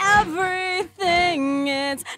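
A singer's voice in a recorded vocal track playing back, holding notes and sliding between pitches in a few short phrases.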